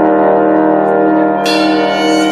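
A swing big band holding a sustained chord of long, steady notes, with brass to the fore. The sound grows brighter and fuller about a second and a half in.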